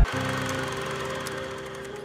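Channel logo intro sound: a dense, rasping noise over a few held tones, starting abruptly as the preceding music cuts off and fading away steadily.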